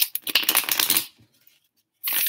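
A deck of tarot cards being shuffled by hand: a quick, dense flurry of card flicks for about a second, trailing off into a few faint taps.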